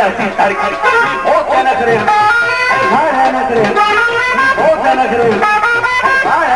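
Live band music from a Punjabi folk stage duet, an instrumental passage between sung lines: a bright plucked-string melody moving in quick steps over the band.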